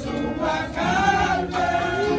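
A women's choir singing together in a church hall, held notes that rise and fall in pitch.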